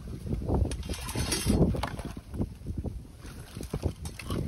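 Creek water sloshing and splashing in uneven surges as gloved hands work a trap in the shallow water, with a few short knocks of metal and sticks and wind rumbling on the microphone.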